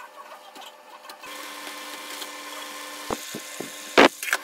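A small motor starts about a second in and runs with a steady hum. A few knocks come near the end, then a loud thump.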